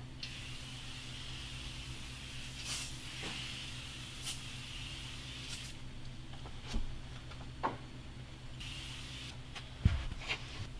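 Aerosol foam cleaner being sprayed onto a clear plastic sheet: one long hiss of about five and a half seconds, then a short burst near the end, over a steady low hum.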